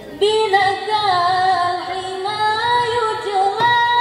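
A young female voice sings a slow, ornamented unaccompanied opening line for a marawis group, with long held notes that bend and slide in pitch, entering about a fifth of a second in. A drum strike comes in near the end as the marawis percussion starts.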